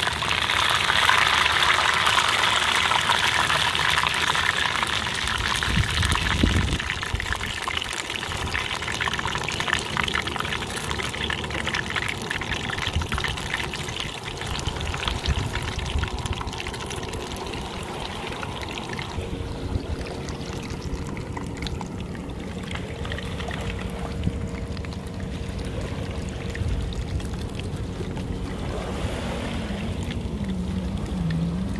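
Battered whiting fillets deep-frying in a pot of hot oil: a steady, dense sizzle that is loudest for the first several seconds, then eases off.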